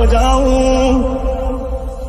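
Hindi song ending: a long held sung note with a slight waver over a steady low bass, the music fading away in the second half.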